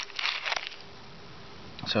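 Small metal shovel scraping and crunching into wet, gravelly sand, a few short gritty strokes in the first half second or so.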